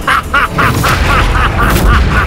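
A man's loud, drawn-out villainous laugh, a fast even run of short 'ha-ha' syllables, over a deep rumbling score that swells near the end.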